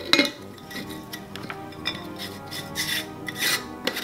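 A metal lid being screwed down onto a glass mason jar, its threads rasping in a few short scrapes, with soft background music underneath.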